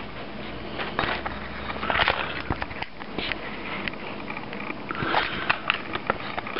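Close-up handling noise of a video camera being checked: irregular clicks, knocks and rustles as it is touched and moved.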